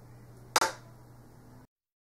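A single sharp smack of hands, about half a second in, over a low room hum; the sound cuts off to dead silence near the end.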